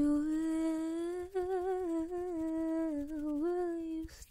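A woman softly humming a slow melody close to the microphone, in one long wavering phrase with small dips in pitch.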